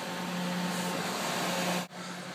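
Steady workshop background noise: an even hiss with a faint low hum, with no hammer blows, and a brief dropout near the end.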